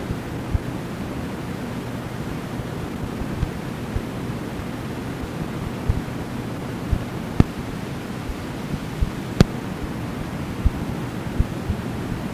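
Steady hiss of background noise, with scattered faint clicks and a few low thumps; no voice.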